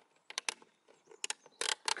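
Plastic clips of a Ford Fiesta ST wing-mirror cover snapping into place as the cover is pressed back on: a handful of sharp clicks and small knocks, some in quick pairs.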